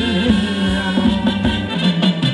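A live band playing Thai ramwong dance music with a steady beat.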